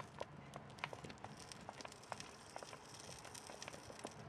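Faint, irregular crackling and ticking over a soft hiss from the fire in a homemade waste-oil burner.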